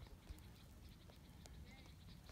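Near silence: faint outdoor ambience with a low rumble and a few soft clicks.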